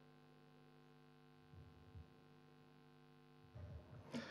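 Near silence: a faint, steady electrical hum, with a few soft low bumps about halfway through and again near the end.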